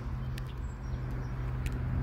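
A steady low hum with a few faint clicks, the first about half a second in and another late on.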